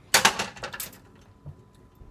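Salad being put into a bowl: two short, noisy bursts of handling in the first second, then quiet room sound.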